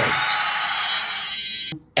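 A sustained, dense electronic tone like music or a sound effect, thinning out and then cutting off suddenly near the end.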